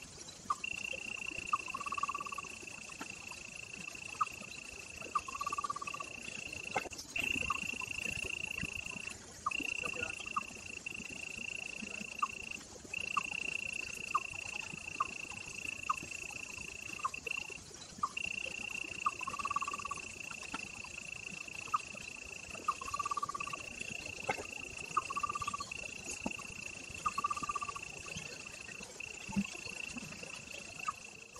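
A steady, high-pitched insect drone that breaks off briefly every few seconds, with short, lower-pitched calls repeating at intervals.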